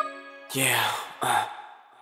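A break in a kizomba song: the backing music cuts out and a man's breathy vocal sigh with reverb rises and fades about half a second in, followed by a second, shorter sigh.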